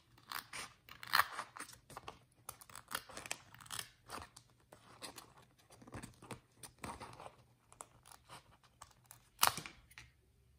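Small scissors snipping through a sheet of patterned paper in a run of short, irregular cuts, with one sharper snip just before the end.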